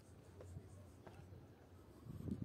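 Near silence: faint outdoor room tone with a low steady hum and a couple of faint ticks.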